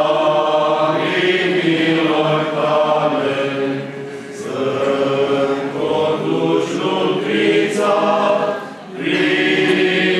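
Male vocal group singing an Orthodox church hymn a cappella in sustained phrases, with a short break between phrases about four seconds in and another near the end.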